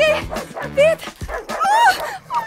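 A dog barking a few times over background music with a steady beat.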